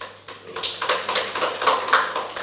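An audience applauding, the clapping starting about half a second in and growing louder.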